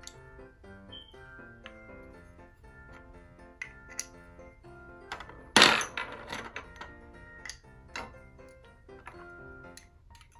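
Light background music with a tune, over scattered clicks of plastic stacking pegs on a tabletop. About five and a half seconds in, the pegs clatter loudly against the table, the loudest sound.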